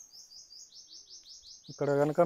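A small bird sings a rapid trill of short, high, falling notes, about seven a second. It runs until a man's voice cuts in near the end.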